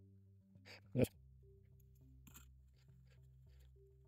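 Faint clicks and ticks of threaded metal telescope parts, a cap and adapter on the refractor's focuser, being unscrewed by hand, with faint sustained background music underneath.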